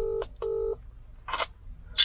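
British telephone ringback tone heard through a mobile phone's speaker while an outgoing call waits to be answered: one double ring, two short buzzing tones in quick succession at the start, then quiet.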